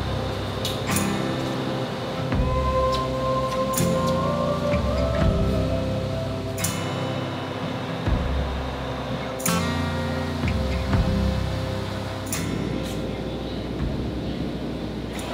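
Background music with a sustained melody over a bass line that changes note every second or two, and a few sharp percussive hits.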